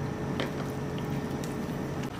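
Red silicone spatula stirring thick chocolate cake batter in a glass bowl: a soft, wet squishing, with one light click about half a second in.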